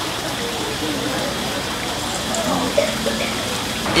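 A steady, even rushing noise of the room's ambience, with faint voices of other people in the background.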